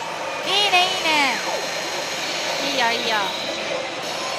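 Steady din of a pachislot hall, many machines running at once, with two short voice cries over it: one about half a second in that ends in a falling glide, and a shorter one near three seconds.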